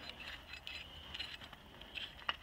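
Faint, scattered metallic clinks of a steel screw clevis being handled at a tractor's three-point hitch lift link.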